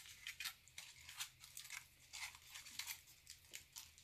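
Aluminium foil crinkling as it is peeled open by hand: a faint, irregular run of small crackles.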